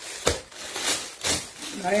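Clear plastic garment bags crinkling and rustling as they are handled, with several sharp crackles, and a woman's voice briefly near the end.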